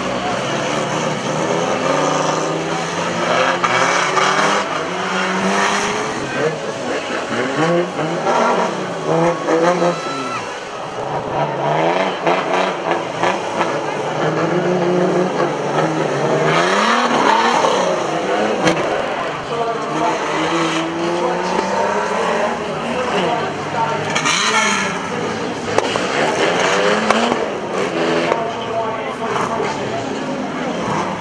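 Engines of several old banger-racing saloon cars running and revving, their pitch rising and falling again and again as they drive slowly at low speed.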